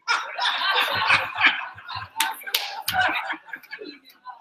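A room of people laughing, with a few sharp claps a little over two seconds in.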